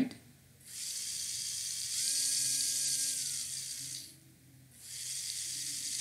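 Small yellow plastic-geared DC motor (TT-style gearmotor) spinning a toy wheel, with a gear whine. The whine rises in pitch as the motor speeds up about two seconds in, falls back, and cuts out briefly around four seconds. It then resumes more quietly at the motor's minimum speed. The speed is set by the joystick through the L298N driver's PWM output.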